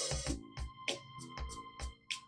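Multitrack song playing back from studio monitors: a steady drum beat with kick and cymbal hits under sustained keyboard chords.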